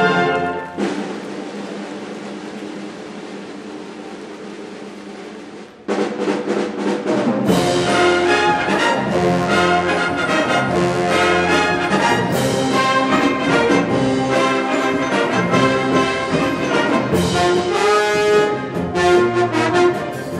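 High school wind band playing, brass to the fore. A loud full chord breaks off about a second in and a quieter passage fades away. Then the full band comes back in suddenly around six seconds, and from about seven and a half seconds percussion strikes drive it on.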